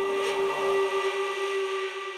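Background music: a single long held note with overtones and no beat.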